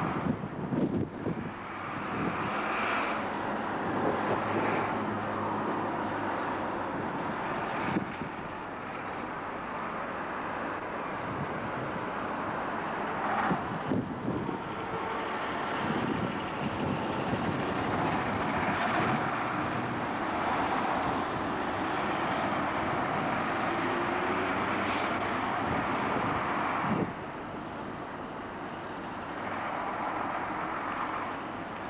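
Diesel single-decker bus running as it pulls past, over general street traffic, with wind rumbling on the camcorder microphone. The sound drops abruptly in loudness a few seconds before the end.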